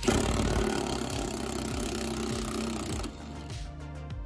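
Impact wrench running on a rusted Jeep Wrangler body-mount bolt for about three seconds, then stopping suddenly.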